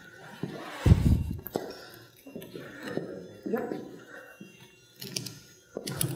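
Faint, indistinct voices, with a dull thump about a second in and a couple of sharp clicks near the end.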